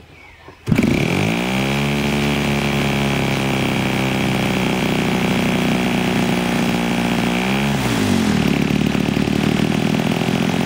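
US41CC single-cylinder two-stroke gasoline model-airplane engine, fitted with a JTEC muffler and turning a propeller, starting under a hand flip about a second in, revving up and running steadily. Near the end its pitch dips and picks back up as the throttle is worked.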